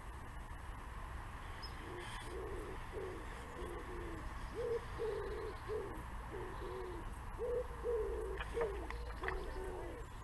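A pigeon cooing: repeated phrases of short, low hooting notes, starting about two seconds in. A few faint clicks come near the end.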